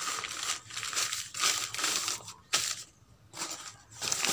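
Newspaper rustling and crinkling in irregular bursts as sheets are spread and pressed flat to line the bottom of a plastic basket, with a short lull about three seconds in.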